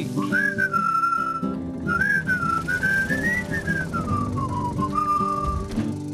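A person whistling a wandering tune with gliding notes over the song's backing music, with the whistling stopping near the end.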